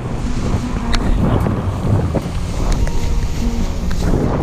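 Airflow in flight under a paraglider, rushing and rumbling unevenly over a fisheye camera's microphone.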